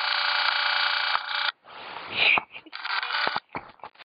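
Video camera's zoom motor whining, a steady electronic whine of several tones, for about a second and a half. It cuts off, then whines again briefly about three seconds in, with handling noise and a few clicks between.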